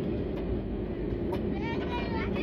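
Cabin noise of an Airbus A320-family airliner rolling out on the runway after touchdown: a steady low rumble of engines and wheels on the runway, with a steady hum underneath.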